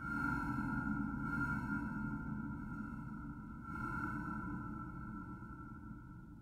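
Ambient electronic drone of sustained held tones that swells at the start and again a little before four seconds in, then slowly fades, over a low rumble.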